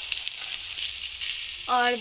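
Cauliflower, potato and peas sizzling steadily as they fry in oil and spice paste in a metal kadhai.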